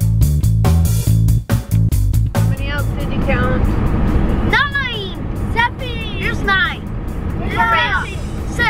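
Background music with a strummed guitar and steady beat for the first two and a half seconds, then children's high voices calling out over the steady rumble of a van's cabin on the road.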